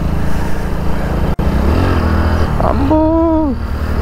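Hero Splendor motorcycle's small single-cylinder engine running steadily while riding, with wind noise over it and a short voiced sound from the rider about three seconds in.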